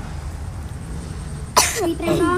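A person coughs once, sharply, about one and a half seconds in, over a steady low background rumble.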